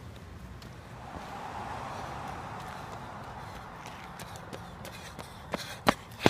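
Running footsteps on pavement, faint and scattered, under a soft rushing noise that swells and fades in the middle. Two sharp knocks come near the end.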